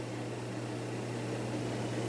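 Steady room tone: a low, even hum with a light hiss and nothing else happening.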